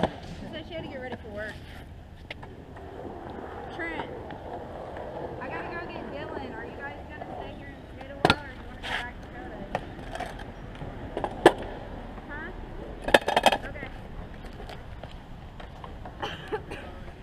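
Hard wheels rolling on concrete, then a few sharp clacks about halfway through and a loud clattering burst near the end, as a metal kick scooter hits and falls onto the concrete.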